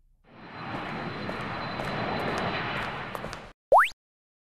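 Cartoon sound effects between scenes: an even, hiss-like noise for about three seconds, cut off, then one quick, loud rising whistle-like sweep near the end.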